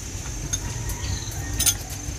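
Insects keep up a steady high drone over a low background rumble. Two light clinks, likely chopsticks or spoons against ceramic bowls, come about half a second in and, louder, near the end.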